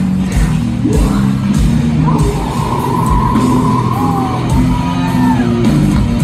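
Hardcore punk band playing live in a large hall: heavy distorted guitars and drums, with yelled vocals. A long high note is held over the music from about two seconds in, followed by a few short gliding notes.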